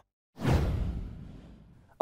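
A whoosh transition sound effect: it comes in suddenly about a third of a second in, strongest in the low end, and fades away over the next second and a half.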